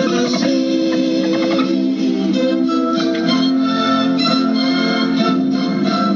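Background music: held chords with a melody moving over them, at a steady level.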